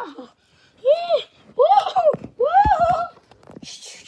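A child's voice making three drawn-out sing-song calls about a second apart, each rising and then falling in pitch.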